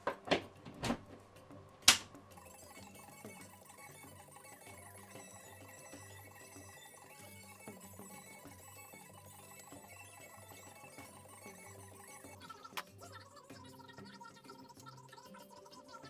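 A few sharp clicks in the first two seconds, the loudest just under two seconds in, as a UK wall socket's rocker switch is flicked on. Then quiet background music with sustained tones.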